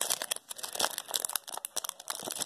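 Foil wrapper of a baseball card pack crinkling and crackling in the hands as it is worked open, a quick irregular run of small sharp crackles.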